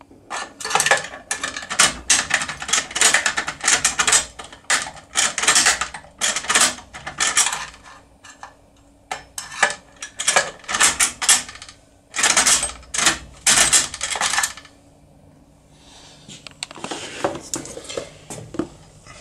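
Lever-lock impression tool being turned and rocked in the keyhole of a CR Serrature lever lock: fast bursts of metallic clicking and rattling from the tool and the lock's levers, stopping about three-quarters of the way through. Softer handling clinks near the end.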